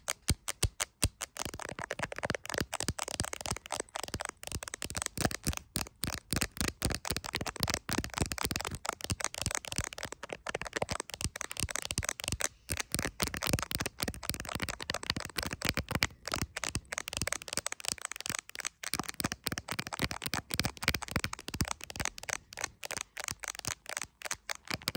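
Long fingernails tapping fast on the back of an iPhone in a clear plastic case, around the camera lenses: a few separate taps at first, then a dense, rapid run of sharp clicks.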